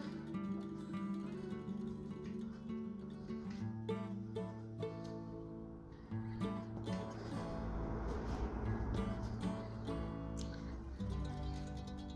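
Instrumental background music played on a guitar, with plucked notes.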